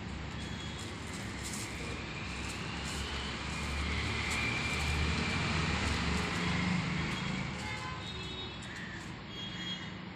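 A passing motor vehicle: a low engine rumble that swells to its loudest in the middle and fades again toward the end.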